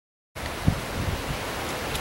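A brief dropout to dead silence, then steady outdoor background hiss with a faint low bump a little under a second in.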